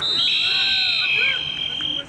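Several referees' whistles blown together, three steady shrill tones of different pitch overlapping; two stop about a second in and one holds to near the end, as the play is whistled dead. Shouting voices underneath.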